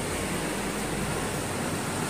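A steady hiss of background noise with no speech.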